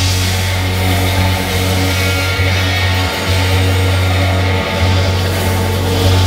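Live rock band playing an instrumental passage: electric guitars and a heavy, sustained bass line over drums, with no singing.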